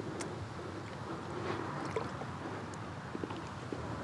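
Gentle water lapping and trickling against a kayak's side while a musky is held in the water alongside, with a few faint clicks.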